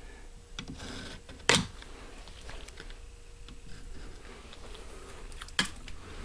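Faint scraping and small clicks of a thin metal pick working along the edge of a rifle action and stock, cleaning away squeezed-out bedding compound, with two sharper clicks about a second and a half in and near the end.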